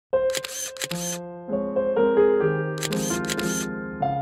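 Piano music with camera shutter sound effects laid over it: a quick run of shutter clicks in the first second and another about three seconds in.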